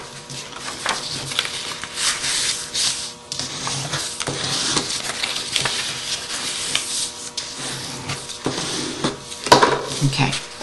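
Scored designer paper being folded along its score lines and creased with a bone folder: a steady rubbing, rustling sound with a few sharp clicks, louder near the end.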